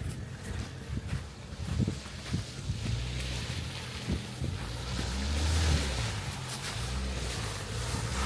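Ford Ranger four-wheel-drive pickup driving slowly along a snowy, muddy forest track, its engine a low rumble heard from behind. The engine swells under throttle about five seconds in and again near the end.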